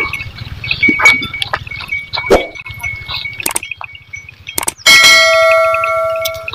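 A click and then a bell ding from a subscribe-button animation, starting suddenly about five seconds in and ringing on for about a second and a half; it is the loudest sound here. Before it there is a steady high chirping with scattered light clicks.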